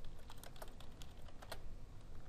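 Computer keyboard being typed on: a quick, irregular run of key clicks.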